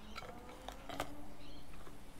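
Faint handling of small metal bicycle headset parts on a rubber mat, with a few light clicks, the sharpest about halfway through.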